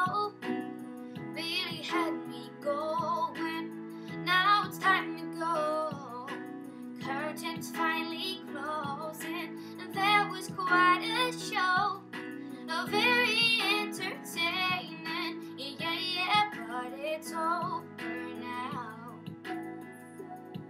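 A girl's solo singing voice, phrases with vibrato on held notes, over a karaoke backing track of sustained chords and guitar.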